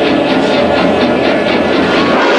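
Loud, steady roar of the gas-fed flame effect burning around the gasoline tank on the Jaws ride's fuel dock, with music faintly underneath.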